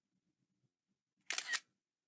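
iPad screenshot shutter sound: a short camera-shutter click in two quick parts, about a quarter second apart, a little over a second in.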